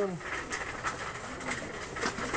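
A flock of pigeons pecking at feed on a concrete floor, with faint scattered taps and soft cooing.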